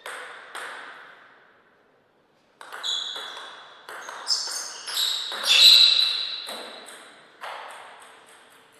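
Table tennis ball clicking off the table and the players' bats in a rally, a sharp ringing tick every half second or so. The loudest hit comes a little past halfway, and a last tick follows near the end.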